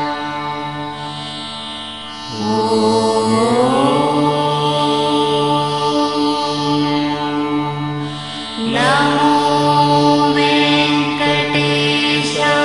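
Devotional background music: a steady drone under a chanting voice, which swells with an upward pitch slide about two seconds in and again near nine seconds.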